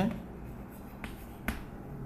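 Chalk tapping against a chalkboard while writing: a faint sharp tap about a second in and a stronger one half a second later, over low room tone.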